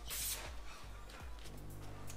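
A short hiss from an aerosol can of ether (starting fluid) sprayed at the tyre bead, in the first half second. After it comes a faint, steady low hum.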